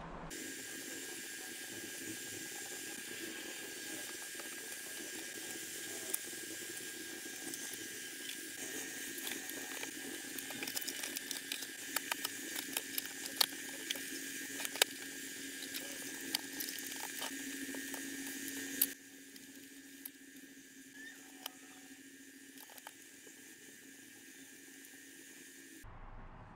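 Light clicks and knocks of computer hardware being handled and fitted into a NAS enclosure, over a steady hiss with a faint constant hum. The hiss drops abruptly quieter about two-thirds of the way through.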